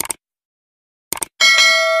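Subscribe-button animation sound effect: a single click, then a quick double click about a second later, followed by a bright notification bell chime that rings on and is the loudest sound.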